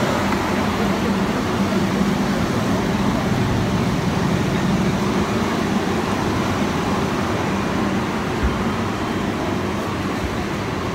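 Steady city street traffic noise with a low, even engine hum.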